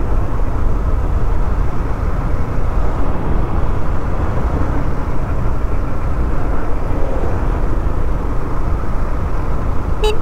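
Steady wind and road noise of a moving motorcycle, heard from the rider's own position, with a deep rumble under an even rush.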